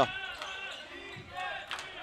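A basketball being dribbled on a hardwood court floor, a few sharp bounces heard under the faint arena background.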